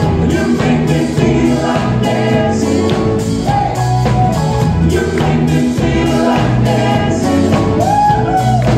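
A live pop-rock band playing a song, with keyboards and a steady drum beat under a male lead vocal.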